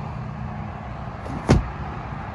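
Steady low rumble of distant road traffic, with one sharp knock about one and a half seconds in.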